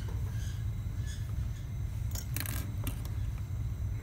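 Steady low hum with a few faint, light clicks and scrapes from hands working around a dental stone cast and pliers on a bench, clustered around the middle.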